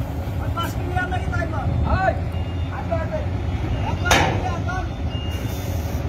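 A Hyundai Universe coach's diesel engine runs at low speed with a steady low rumble as the bus creeps across a steel ferry deck. Voices call out over it, and there is one short loud hiss about four seconds in.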